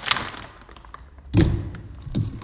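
Small clicks and crackles of a plastic snack wrapper being pulled open, then one dull thump about one and a half seconds in.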